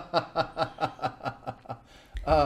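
A man chuckling: a run of short breathy laugh pulses, about four or five a second, dying away toward the end.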